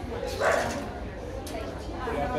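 A dog barks once, about half a second in, over steady crowd chatter.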